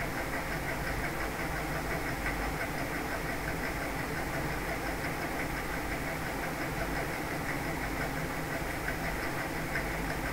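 Steady background hum and hiss that stays level throughout, with a few faint constant tones in it and no distinct events.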